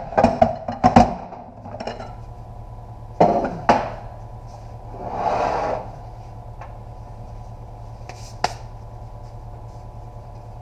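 Metal parts of a 68RFE transmission clanking and knocking on a steel bench as the case is turned around and the output drum is pulled out. A short scraping rush comes about five seconds in, and a single sharp click near the end, over a steady hum.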